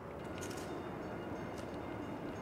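Steady city street background noise: a low, even hum of distant traffic with no distinct events.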